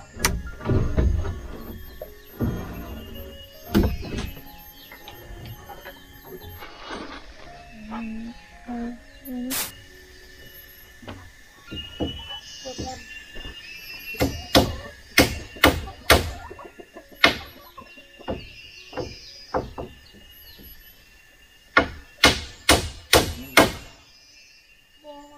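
Hammer blows on wooden rafter poles as they are nailed in place: scattered single knocks, then quick runs of strikes near the middle and again near the end.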